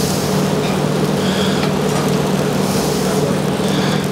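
Steady low hum and hiss of restaurant kitchen equipment, with soft scraping as risotto is pushed from a steel sauté pan onto a plate.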